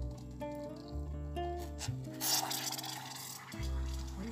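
Background music with steady notes and bass, and about halfway through a hissing rush lasting a second and a half: boiling water poured from a steel pot into a ceramic teapot.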